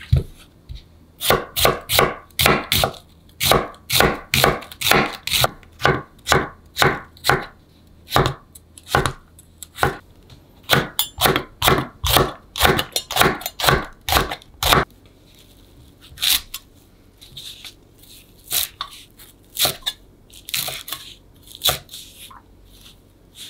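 Chef's knife slicing onion and chili peppers on a wooden cutting board: a steady run of crisp knife strikes, about two or three a second. Past the middle the cuts become fewer and softer.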